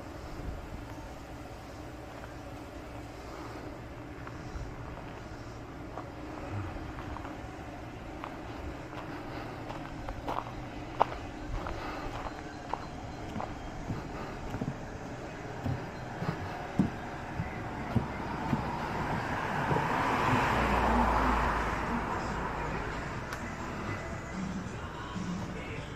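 Outdoor street ambience: a steady low background, a scatter of sharp knocks through the middle, and a car passing, swelling and fading near the end.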